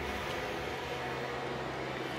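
A steady low hum with a light even hiss, with no distinct events.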